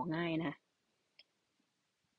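A woman speaking Thai for about half a second, then near silence with one faint click about a second in.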